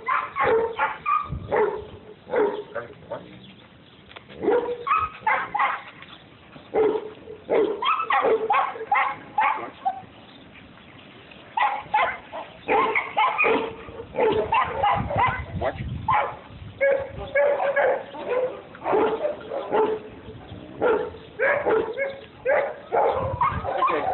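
A large dog barking repeatedly in short bursts, pausing for about a second and a half near the middle.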